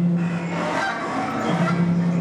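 Live experimental music from a wind instrument: a long, low held note that stops about three quarters of a second in, then a second low held note about a second and a half in, with scattered higher tones between.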